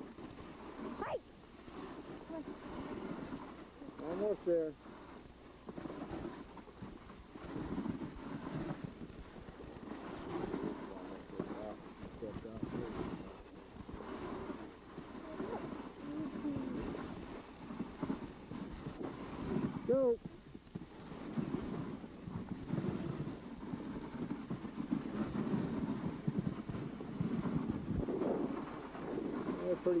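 Dog sled runners sliding over packed snow, a steady, uneven scraping noise, with wind on the microphone. Two short rising-and-falling cries stand out, about four seconds in and again about twenty seconds in.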